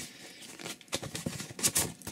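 Cardboard watch packaging being handled: an outer box is turned over and the inner box is slid out, with a scatter of scraping and tapping sounds, loudest near the end.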